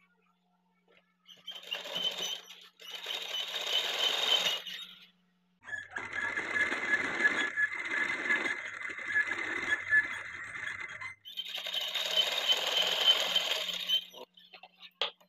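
Electric sewing machine stitching a fabric piping strip onto a blouse neckline, running in four spells that start and stop: a short one about a second and a half in, a longer one to about five seconds, the longest from about six to eleven seconds, and a last one running on at the end.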